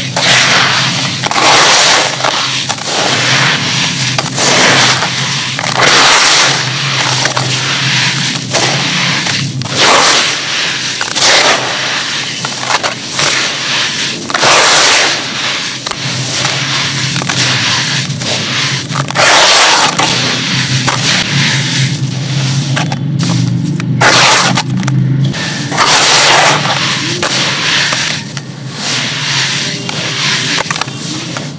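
Hands scooping, squeezing and crumbling coarse dry gritty sand in a plastic tub, letting it pour back down: a gritty crunching and sifting rush that surges with each handful, every second or two.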